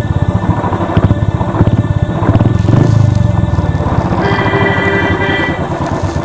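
Motorcycle engine running close to the microphone, a fast, steady beat of firing pulses that swells slightly about three seconds in. A steady higher tone sounds over it for about a second after four seconds in.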